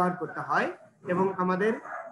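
Speech only: a man talking, in steady syllables with short pauses.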